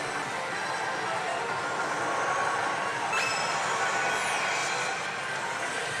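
Pachislot parlor din: a dense, steady wash of noise from many slot machines, with a few high falling tones a little past the middle.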